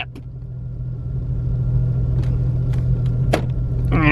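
A parked car's engine idling, heard from inside the cabin as a steady low hum, with a faint click about three seconds in.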